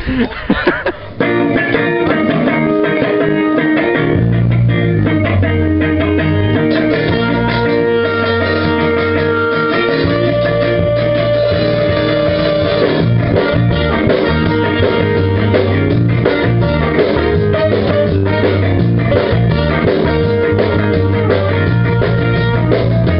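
Ska-punk band music with electric guitar, bass guitar and drums, starting about a second in; the bass comes in strongly about four seconds in.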